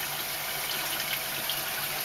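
Steady rush of water running through a koi-pond filter system of pumped pipework, a midi sieve and a protein skimmer, with a faint steady hum underneath.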